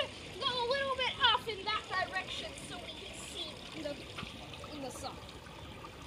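A high-pitched child's voice talking or exclaiming for the first couple of seconds, words not made out, over faint water sounds from the disturbed pool water.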